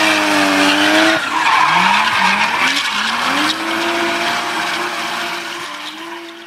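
Car burnout: an engine revving hard while the spinning tyres screech. The engine note holds, drops away about a second in, climbs in a few short rises, then rises and holds, and the sound fades near the end.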